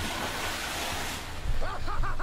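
A splash of water in a swimming pool, heard as a rushing wash of spray that dies away about a second in.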